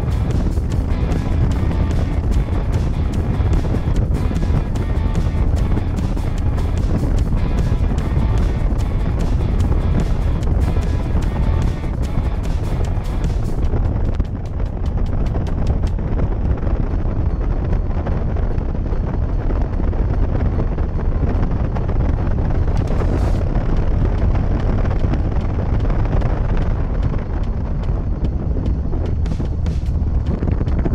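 Background music over a steady rush of wind on the microphone and a motorcycle running at road speed; the music stands out less after about halfway.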